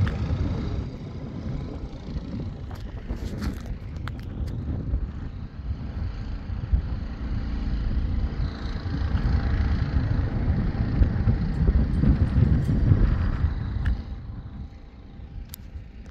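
Wind buffeting the phone's microphone: an uneven low rumble that swells and fades, with a few handling clicks a few seconds in.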